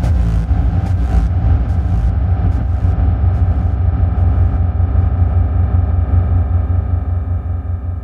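Outro of an electronic hardstyle track: a deep, wavering synth bass rumble carries on with no beat. A few high ticks and some hiss fade out in the first three seconds, and the rumble slowly dies away near the end.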